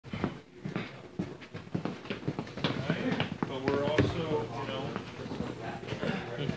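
People's voices, talking briefly about halfway through, over a string of short knocks and clatter from the rig being handled.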